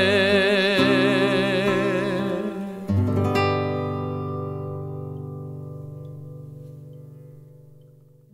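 Acoustic guitar and a voice finishing a song: a long sung note with vibrato ends about two and a half seconds in. A final strummed chord about three seconds in then rings out and fades slowly away.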